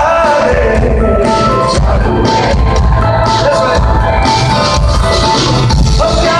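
Live band music played loud over an arena sound system, heard from among the audience.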